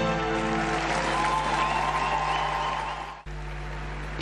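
Arena crowd applauding as the ice dance program's music fades out at its close; the sound cuts off abruptly just over three seconds in.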